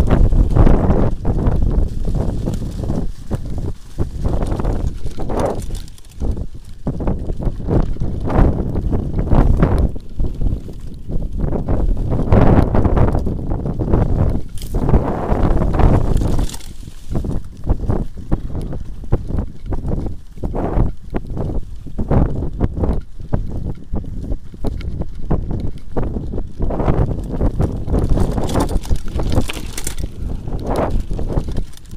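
Mountain bike running fast down a bumpy dirt trail: a continuous rumble of knobby tyres on the ground with constant irregular knocks and rattles from the bike frame and parts over bumps, and wind buffeting the microphone.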